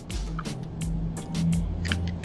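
Background music with a steady beat of sharp percussive hits over a sustained bass line.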